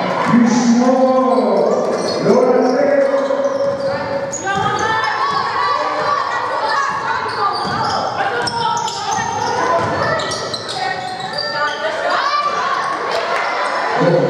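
Basketball being dribbled on a hardwood court in a large hall, with players and coaches calling out throughout.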